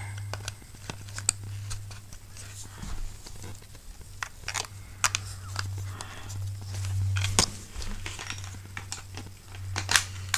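Scattered sharp plastic clicks and rustling handling noise as a GoPro and its J-hook mount are fitted together by hand close to the microphone, over a steady low hum.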